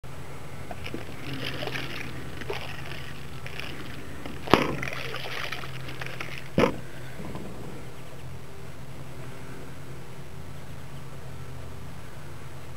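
A plastic bottle of liquid and plastic beads being shaken, the liquid sloshing and the beads rattling, then two sharp knocks, the first louder, as it is handled. A steady low hum runs underneath.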